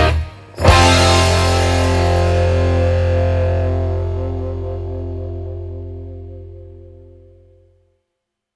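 Final chord of a country-rock song, struck on distorted electric guitar with bass less than a second in after a brief stop, then left to ring and fade out over about seven seconds.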